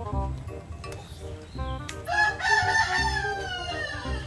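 A rooster crows once, a single long call of nearly two seconds starting about halfway in, over background music with a stepping melody and a steady low beat.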